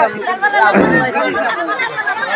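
Several people talking and calling out over one another: crowd chatter.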